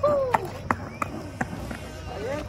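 Skateboard rolling on a concrete path, a low rumble with sharp ticks a few times a second. A short vocal sound at the very start.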